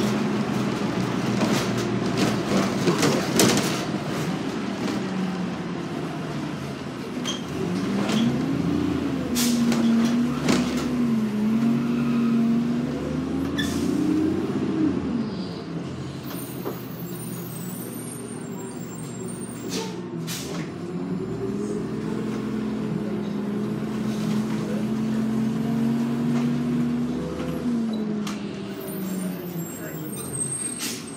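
New Flyer D40LF diesel transit bus heard from inside the cabin: the engine pulls away and climbs in pitch, holds, then drops back, twice over. Several brief clicks, rattles and short hisses run throughout.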